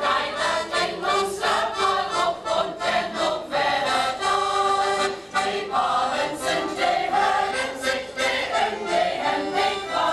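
Mixed choir singing a Low German song to piano accordion accompaniment.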